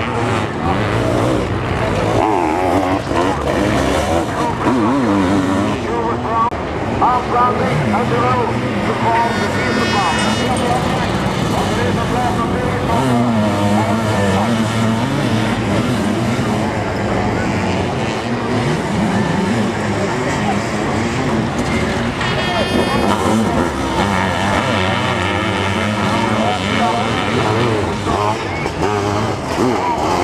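Sidecar motocross outfits racing on a dirt track, their engines revving up and down as they pass.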